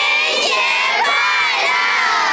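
A group of children, with some adults, shouting a blessing together in unison: one loud, drawn-out group shout.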